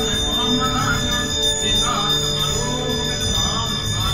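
Bells ringing steadily over music.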